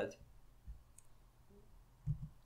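A few faint clicks from a computer being used to search, with a soft low thump about two-thirds of a second in.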